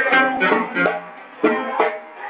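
Live samba de roda music led by a plucked string instrument, with strummed notes in a quick rhythm and a brief dip in loudness partway through.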